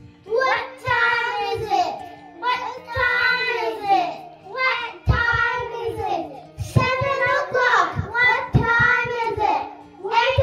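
Children singing a song into handheld microphones, in phrases with short breaths between them, over a music accompaniment with steady held low notes.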